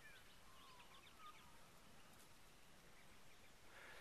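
Near silence outdoors, with faint bird calls: a few short chirps and whistles, mostly in the first two seconds.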